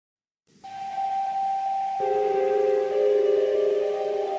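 Instrumental intro of a karaoke backing track: one sustained high note comes in about half a second in, and lower held notes join it about two and three seconds in to build a chord.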